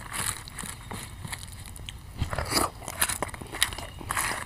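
Close-miked eating sounds: fingers squishing and scraping soft breakfast food on a banana leaf, with chewing. Irregular small crackles and clicks, a little louder past the middle.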